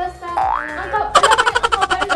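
Comedic cartoon sound effect: a short rising whistle-like glide, then a rapid fluttering spring 'boing' that starts about a second in and pulses about a dozen times a second, over background music.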